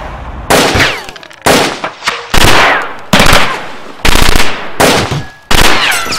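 Seven loud, sudden bangs, about one a second. Each dies away over half a second, several trailing a falling whistle.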